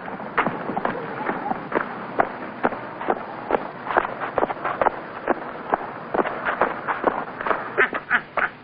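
Boots of a squad of soldiers marching in step on a dirt ground, about two footfalls a second, over a steady background hiss.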